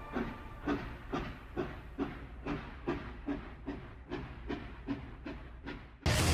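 Train wheels clicking over rail joints in a steady rhythm of about two strokes a second, slowly fading away.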